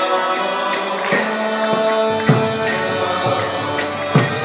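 Devotional mantra chanting set to music, with long held notes over a steady beat of jingling percussion.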